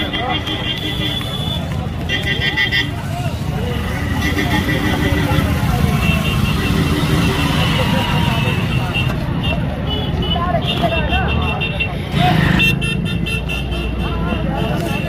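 Busy road with crowd voices and running vehicle engines. Vehicle horns sound in short, rapidly pulsing bursts several times.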